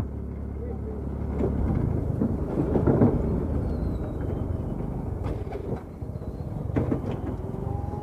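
Bajaj Pulsar RS200 motorcycle rolling along during a push-start attempt in gear, the single-cylinder engine being turned over by the rolling bike, with a steady low rumble of road and wind noise that swells a little a couple of seconds in. A few short clicks near the end.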